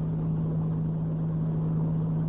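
Steady low hum with a background hiss, the constant noise floor of a lecture recording, heard in a pause between sentences.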